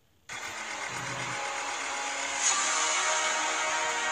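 Robot toy dinosaur running, a steady mechanical whir with electronic tones that starts after a brief silence and gets louder and brighter about two and a half seconds in.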